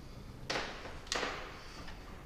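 Two soft footsteps on a hardwood floor, about two-thirds of a second apart, in a quiet hallway.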